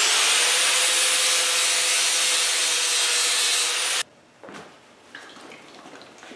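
Electric angle grinder running with its wheel on a mild-steel weld sample: a dense grinding rasp over the motor's high whine, which climbs as it spins up at the start. It cuts off suddenly about four seconds in.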